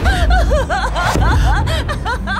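A young woman's voice laughing heartily, in a quick string of short ha-ha bursts, over a low music bed.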